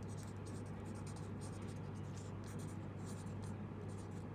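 Fine-tip pen writing on a sheet of paper: faint, quick scratching strokes, over a steady low hum.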